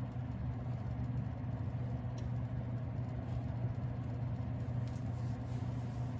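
Steady low hum with a faint hiss of red bell peppers frying in a covered steel pan, and a couple of faint ticks about two and five seconds in.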